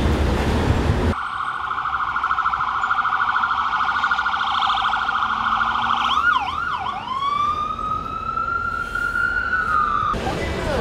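Traffic noise for about a second, then an ambulance's electronic siren. It starts as a fast-pulsing steady tone, breaks into a few quick up-and-down sweeps about six seconds in, then turns to a slow rising wail that eases off slightly near the end.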